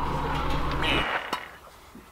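Jeep engine idling, heard from the cabin as a steady low hum that stops abruptly about a second in. A single click follows.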